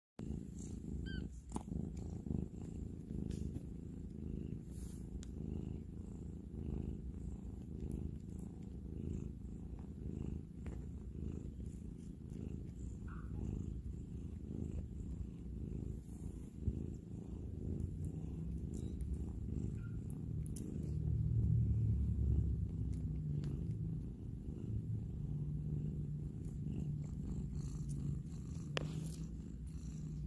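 A cat purring, a continuous low rumble that swells louder about two-thirds of the way through.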